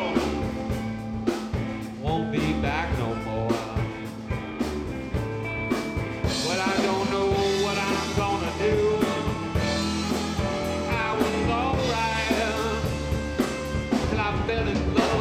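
Live blues band playing an instrumental passage: electric guitar and bass over a drum kit, with lead notes bending up and down in pitch.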